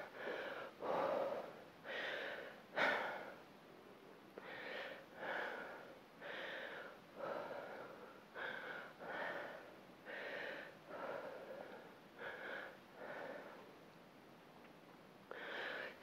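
A woman breathing hard and rhythmically from exertion during dumbbell deadlifts, about one breath a second, with a short pause near the end.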